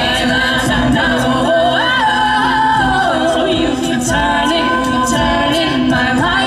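All-female a cappella group singing through handheld microphones: a lead voice over sustained backing harmonies, with a steady beat of sharp hissy hits.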